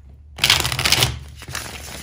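A deck of tarot cards being shuffled in the hands: a loud dense papery rush about half a second in, lasting about a second, then softer rustling.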